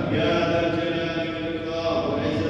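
A man's voice intoning Arabic in a chanted delivery of a Friday sermon, held on long pitched tones rather than broken into ordinary speech.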